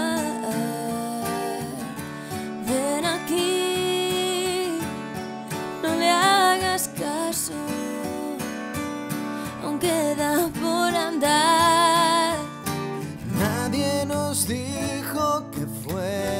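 Acoustic band music: a strummed acoustic guitar keeps a steady rhythm under a sung melody with long, wavering notes.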